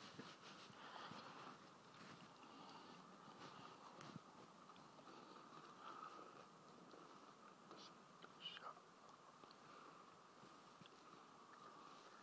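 Near silence: faint outdoor room tone with a steady faint hiss, and a couple of small soft sounds about eight and a half seconds in.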